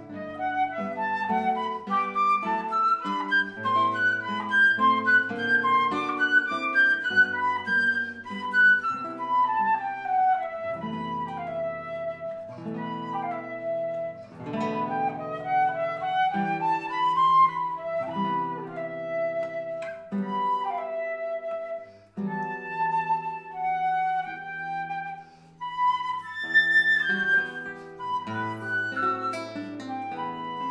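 Concert flute and classical guitar playing together: the flute carries a flowing melody with rising and falling runs over picked guitar accompaniment, and both break off for a moment about two-thirds of the way through.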